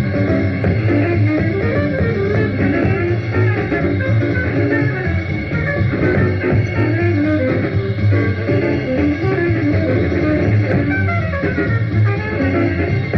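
Small-group jazz from a 1952 session with trumpet, tenor saxophone and drums, played from record over the radio, with moving melodic lines over a steady bass.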